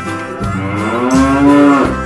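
A cow mooing once: one long call that rises a little and then falls away, over the backing music of a children's song.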